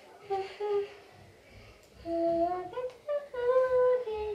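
A toddler singing a wordless tune in a high voice, humming a few short held notes, with a pause of about a second near the start.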